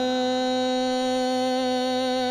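Male Hindustani classical vocalist holding one long, steady sung vowel in an opening alaap, over a faint low drone.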